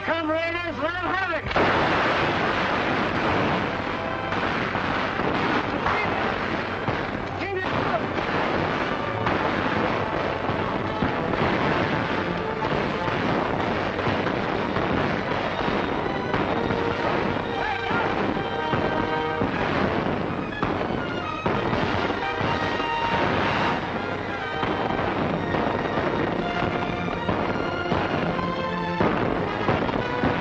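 Old film soundtrack of battle: dense gunfire and explosions over an orchestral score, loud and unbroken throughout.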